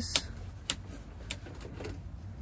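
A few light clicks, about half a second apart, from hands working the latch of a small porthole window.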